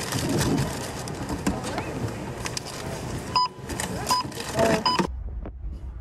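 Checkout barcode scanner beeping three times, about two thirds of a second apart, amid voices and store noise. About five seconds in, the sound cuts to the low, steady rumble of a moving car's interior.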